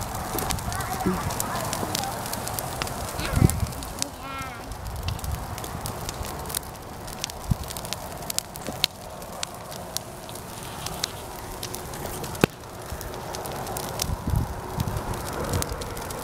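Bonfire of cut blackberry vines burning, crackling with many sharp pops scattered throughout over a steady rushing noise.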